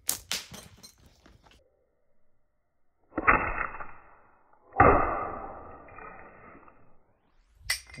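Slingshot shots: a cluster of sharp snaps at the start, then two sudden crashes about a second and a half apart, each dying away over a second or so, as shot strikes the target pile. A single sharp snap comes near the end.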